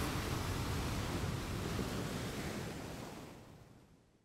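Ocean surf washing onto the beach: a steady rush of breaking waves that fades out over the last second or so.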